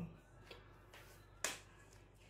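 A single sharp click about one and a half seconds in, with a couple of faint ticks before it.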